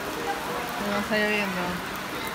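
Heavy rain falling on paved ground, a steady hiss.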